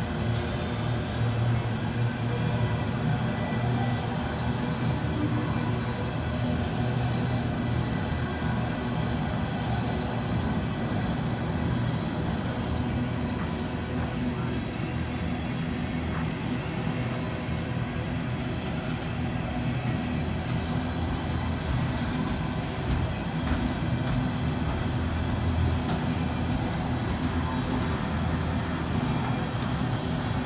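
Empty steel coil cars of a long freight train rolling past at close range: a steady rumble of wheels on rail with a low hum running under it.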